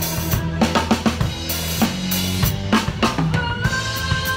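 Rock drum kit played live with the band: a steady pattern of kick drum, snare and cymbal hits over sustained bass and guitar notes.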